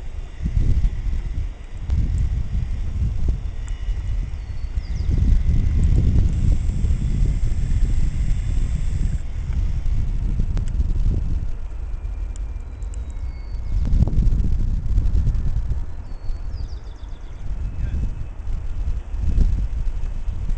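Uneven low rumble of wind buffeting the camera's microphone, swelling and easing every second or two.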